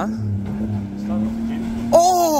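A four-wheel drive's engine running at low revs with a steady drone.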